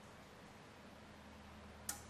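Near silence: room tone with a faint steady low hum, and a single brief click near the end.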